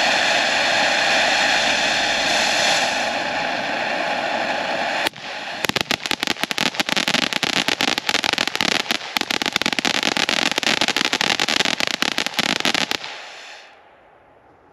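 Miracle Fireworks animal-themed ground fountain (Wesley Whale) burning. It gives a steady rushing hiss of spray for about five seconds, then switches abruptly to dense crackling that runs until it dies out just before the end.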